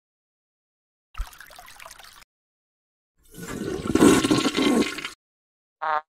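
A short, quiet noise with a low thump at its start, then a toilet flushing: a loud rush of water that swells to its loudest about four seconds in and cuts off about a second later.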